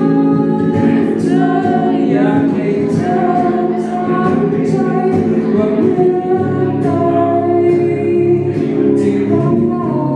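A singer performing live, singing a slow, held melody into a microphone while strumming an electric guitar, both amplified in a small room.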